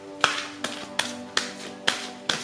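A deck of oracle cards being shuffled by hand: sharp card slaps about two or three times a second, slightly uneven in spacing.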